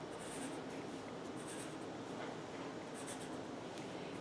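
Felt-tip marker drawn across paper in a few short, faint strokes, inking stripes on a drawing.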